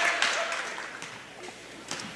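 Gym crowd applause after a made basket, dying away over the first second, then a single sharp knock near the end.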